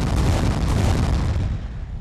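A loud, deep rumbling boom that starts suddenly and dies away over about two seconds.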